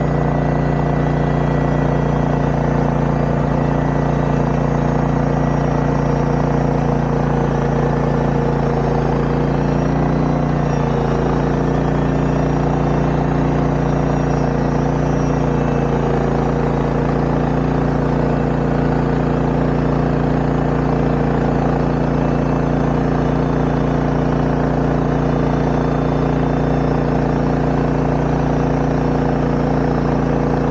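Portable bandsaw mill's gas engine running steadily at constant speed as its band blade saws through a log, with a slight wavering in pitch about a third of the way in as the load changes; the blade is beginning to dull.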